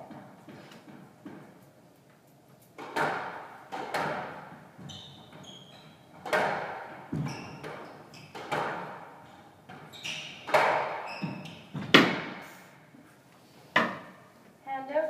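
Squash rally: sharp cracks of racquet on ball and ball on wall, about one every second or so, each ringing in the court, the loudest near the end. A few short high squeaks from shoes on the court floor in the middle.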